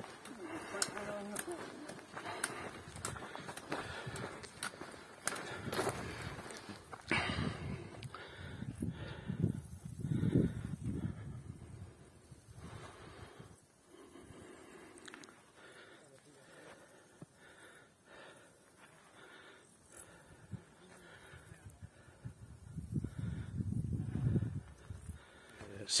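Footsteps and trekking-pole tips tapping and clicking irregularly on a dirt mountain trail, with indistinct voices murmuring at times.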